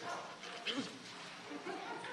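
Quiet room noise of a meeting chamber with a faint, brief off-microphone voice about two-thirds of a second in.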